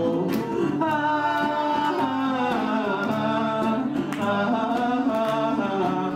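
Live band music with singing: sustained melodic lines that glide in pitch over regular cymbal strokes about twice a second.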